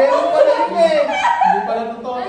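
A group of adults laughing and talking excitedly over one another, with squeals and chuckles mixed in.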